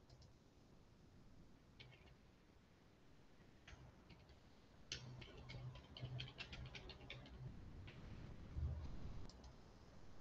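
Faint computer keyboard typing: a quick run of key clicks in the middle, with a few single clicks before and after. A low thump comes a little before the end.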